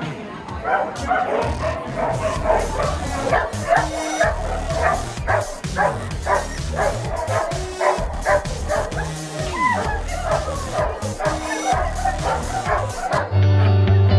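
Several dogs barking and yipping over and over, with voices and a background music track underneath. Near the end a louder guitar music track takes over.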